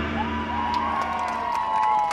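Young voices cheering and whooping with long, high-pitched held shouts just after the dance music has cut off. The last of the music's bass fades out in the first half second.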